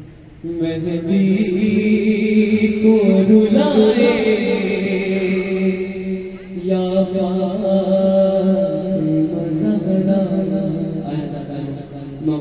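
A young man's voice reciting an Urdu noha (Shia lament) through a microphone, with no instruments. He holds long, drawn-out notes with a wavering pitch, starting about half a second in and pausing briefly about halfway through.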